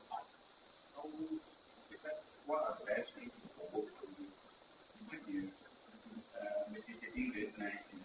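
A faint, distant voice speaking off-microphone, heard over a steady high-pitched whine.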